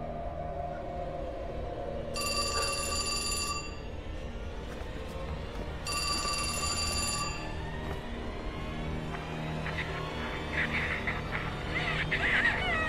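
A telephone ringing twice, each ring about a second and a half long, over tense, low background music.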